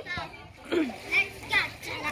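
Children's voices chattering and calling out in short, scattered snatches, quieter than the loud calls around them.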